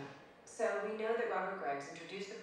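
A woman speaking: television drama dialogue played back through a PA, starting about half a second in after a brief pause.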